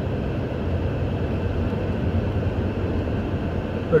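Steady road and engine noise of a car being driven, heard from inside the cabin, with most of the sound a low rumble.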